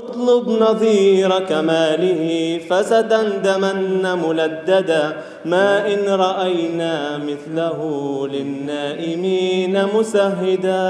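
A man's voice chanting unaccompanied, a melodic Arabic recitation with long held notes and sliding pitch that starts suddenly out of silence.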